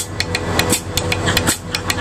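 Drum kit struck with sticks in quick, irregular sharp hits, about five or six a second, over a low steady hum.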